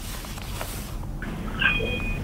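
Telephone line being put through to a studio: a burst of hiss in the first second, then a short high beep near the end, as the caller's line connects.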